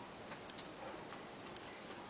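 A few faint, irregular clicks and taps of small objects being handled on a desk, over a steady low hiss.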